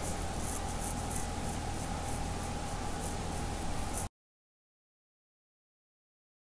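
Low, steady sizzle of diced onion and spices cooking in a pot, with faint crackles; it cuts off suddenly about four seconds in.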